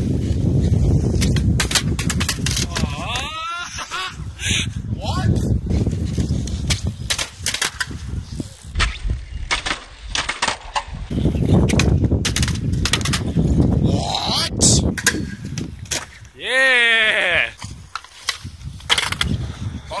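Skateboard wheels rumbling over concrete, broken by sharp clacks of the board's tail and deck hitting the ground as tricks are popped and landed. A couple of short wordless shouts rise over it, one near the middle and one near the end.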